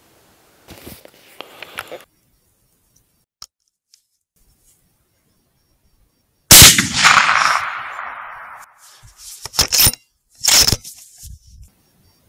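A single very loud shot from a .308 Sauer 101 bolt-action rifle, about halfway through, with a long rolling echo fading over about two seconds. Faint rustling comes about a second in, and two shorter sharp noises follow near the end.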